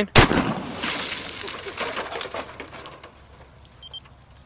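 A single 12-gauge shotgun slug shot, a sharp blast a fraction of a second in, followed by a long echo fading away over about two to three seconds.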